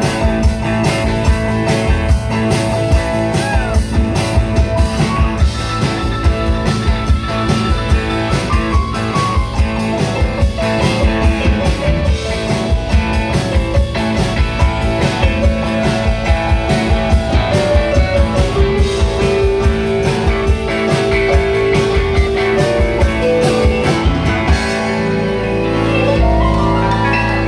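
Live rock band playing an instrumental passage: electric and acoustic guitars and keyboard over a drum kit's steady beat, with long held lead notes.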